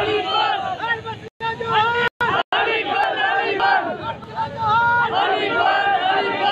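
A crowd of men shouting slogans together, many voices overlapping. The sound cuts out completely for an instant about a second in and twice more around two seconds in.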